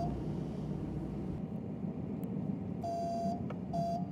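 A car's steady road and engine rumble heard from inside the cabin while driving. Near the end come two short beeps, the first about half a second long and the second shorter.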